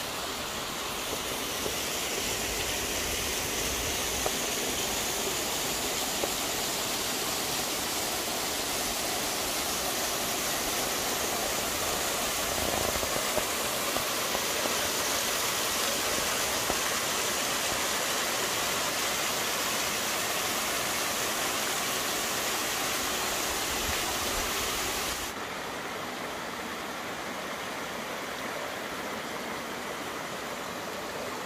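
Mountain stream water running over rocks, a steady rushing wash. About 25 s in it changes suddenly to a quieter, duller trickle.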